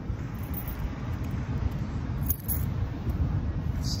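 Wind buffeting the phone's microphone: a loud, uneven low rumble, with a few faint crackles.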